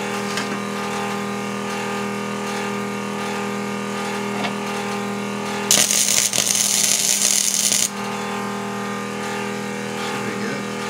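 Electric arc welding for about two seconds, starting near the middle: a loud crackling hiss as a steel bar is welded onto a socket, cutting off sharply. A steady machine hum runs underneath throughout.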